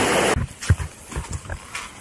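A steady rush of water stops abruptly in the first moment. Then come footsteps on a stony, muddy track: quick, irregular low thuds.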